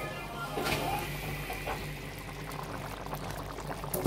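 Curry sauce bubbling softly and steadily in a pan as it simmers.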